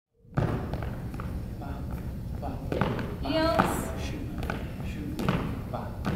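Two swing dancers' shoes stepping and kicking on a hardwood floor as they dance jig kicks: a run of irregular thuds and taps ringing in a large hall.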